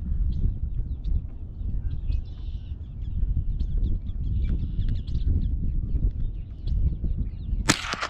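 A single sharp crack of a Marlin Model 60 semi-automatic .22 rifle firing, near the end, over a steady low rumble.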